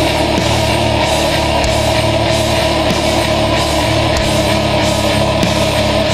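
Black metal band playing an instrumental passage: distorted guitars and drums in a dense, steady wall of sound, with one long high note held throughout.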